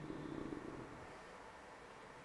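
A man's low, drawn-out hesitation hum, falling in pitch and trailing off within about the first second, then faint room tone.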